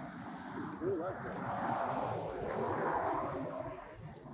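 A vehicle passing by: a rushing noise that swells to a peak midway and fades away near the end.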